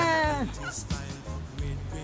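A person's voice holding out the last word of a drawn-out "we made it!", falling slowly in pitch and cutting off about half a second in. Faint background music follows.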